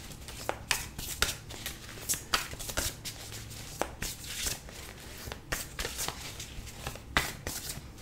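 Tarot cards being shuffled and handled by hand: a run of irregular soft clicks and rustles.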